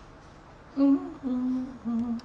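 A woman humming three short notes, starting about a second in, each a little lower than the one before.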